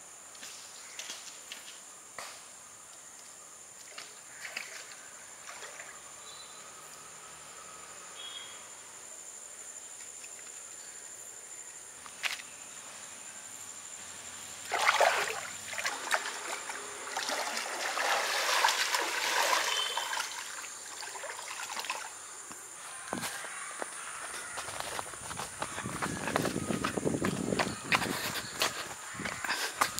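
Water sloshing and splashing in a pond as a person wades in, starting suddenly about halfway through and coming in spells that grow louder toward the end. Beneath it runs a steady high insect drone with scattered light footsteps.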